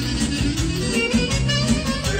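Live party band playing upbeat manele-style music with a steady beat.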